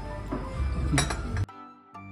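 A single clink of china about a second in, a teacup lifted off its saucer, over background music. Midway through, the room sound cuts out suddenly and only the music's steady notes remain.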